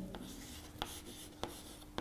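Chalk writing on a blackboard: faint scratching, with a few sharp ticks as the chalk strikes the board.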